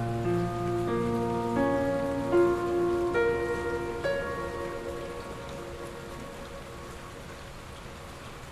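Soft piano on a Kawai NV10 hybrid digital piano: a low chord, then five single notes over about four seconds, each left to ring and fade, over steady rainfall. The piano dies away after about five seconds, leaving the rain.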